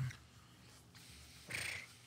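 Quiet room tone, then a short breathy snort of laughter about one and a half seconds in.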